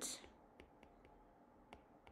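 Near silence with a few faint, short ticks of a stylus tapping a tablet screen during handwriting.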